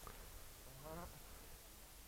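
Near silence: faint outdoor background with one brief, faint voice-like call about a second in.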